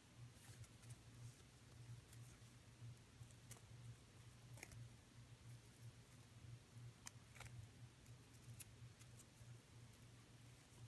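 Near silence: a few faint, scattered clicks from a beaded loom bracelet's metal chain and jump rings being handled, over a low steady hum.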